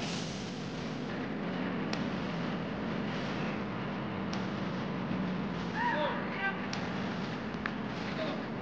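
Open-air ambience of a football training session: a steady background hiss with a few scattered sharp knocks of footballs being kicked, and a short shout from a player about six seconds in.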